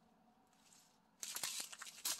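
Near silence, then about a second in, plastic packaging crinkling and rustling as it is handled.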